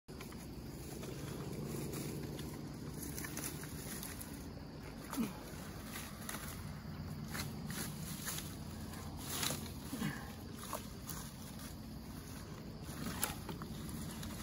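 Sticks and leafy branches rustling, scraping and knocking as they are pushed and woven into a large stick nest by hand, with scattered sharp clicks and cracks. The loudest cracks come about five seconds in and near the end, over a steady low rumble.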